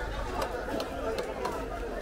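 Voices chattering in a busy fish market, with a few faint sharp clicks of fish being cut on upright bonti blades.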